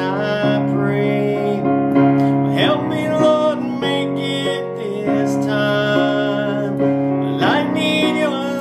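A man singing a Christian song with piano and guitar accompaniment, held notes with gliding vocal lines.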